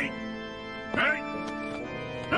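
Short, pitch-bending calls from a small cartoon creature, about one a second, over steady background music.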